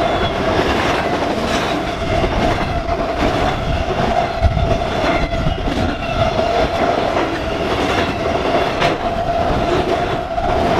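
CSX freight train's autorack cars rolling past close by at speed: a continuous rumble with wheels clicking over rail joints, and a steady whine held on one pitch throughout.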